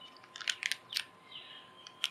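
Plastic packaging crinkling in the hands: a quick cluster of short, crisp crackles about half a second in, then a fainter rustle.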